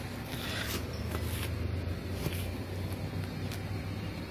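A steel hitch pin being handled against a tractor drawbar, with faint rustling and light scraping over a steady low hum.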